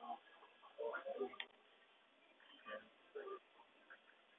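Faint, muffled snatches of people's voices in short bursts, about a second in and again near the end.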